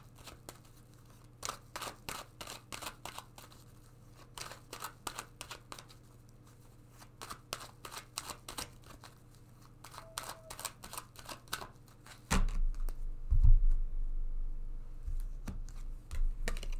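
A deck of tarot cards being shuffled by hand: runs of quick light card clicks and flicks. About twelve seconds in, a loud low bump and rumble of handling noise takes over.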